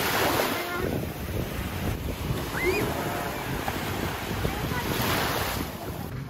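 Sea surf washing in over a sandy beach, its rush swelling as waves break near the start and again about five seconds in, with wind on the microphone.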